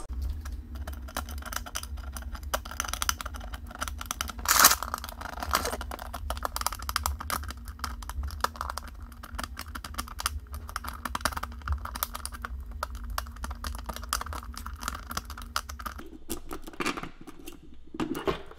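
SentrySafe box's basic key lock being picked with a tension wrench and pick: a steady run of light, quick metal clicks and scratches, with one sharper click about four and a half seconds in.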